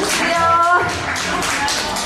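Live band music with acoustic guitar and a steady tapping beat. A voice holds a short note about half a second in.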